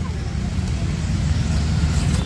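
Wind buffeting the camera microphone: a steady low rumble with a fainter hiss.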